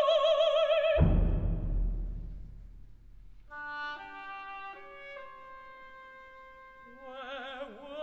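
Orchestral art song: a mezzo-soprano holds a high note with vibrato that ends about a second in on a deep orchestral stroke, which rings away. Quiet, sustained orchestral chords follow, moving step by step, and singing returns near the end.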